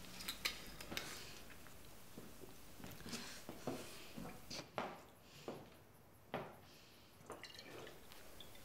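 Whisky sloshing in a glass bottle and a series of soft gulps as someone drinks straight from it, with a few small handling clicks near the start.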